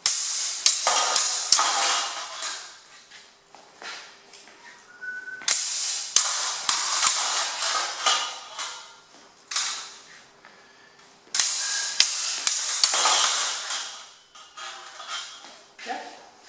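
Steel swords and steel bucklers clashing in a fast sword-and-buckler exchange: four runs of quick, sharp metallic clacks that ring briefly, with short pauses between the runs.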